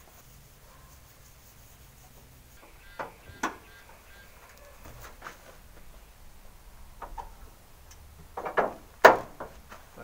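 Handling noises from a 4WD's steel bonnet being opened and propped: two short clicks about three seconds in, then a run of knocks near the end that finishes in one sharp click, the loudest sound.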